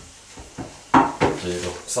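A man speaking in a small wood-panelled sauna room, with a short sharp knock about a second in, just as the voice starts.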